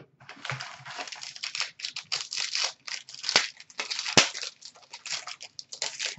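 A trading-card pack wrapper crinkling and being torn open by hand, a dense crackle that runs on for several seconds, with two sharp snaps about a third and two thirds of the way through.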